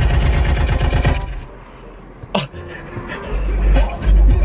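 Car stereo suddenly blaring loud music with heavy, rapid bass as the ignition comes on, cut off after about a second.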